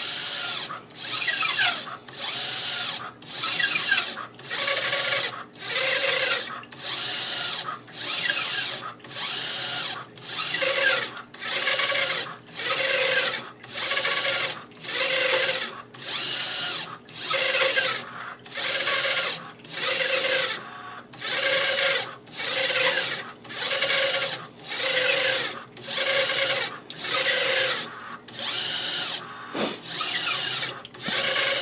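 RCA-10 motorised corrosion scanner's drive motor running in short repeated strokes, about one a second with brief pauses between, as it steps the ultrasonic probe through a scan.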